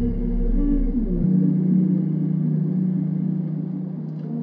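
Slowed dark ambient music: layered sustained tones over a deep bass drone. The bass cuts out abruptly about a second in, leaving a steady held low tone.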